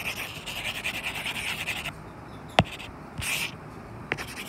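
A stylus scratching as it writes on a tablet screen for about two seconds, then a single sharp tap on the screen, then a short scratch stroke near the end.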